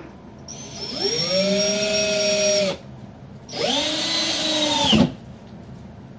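A cordless drill held up against the ceiling boards overhead runs in two bursts, the first of about two seconds and the second about a second and a half later. Its whine rises as the motor spins up, holds steady, and the second burst stops abruptly.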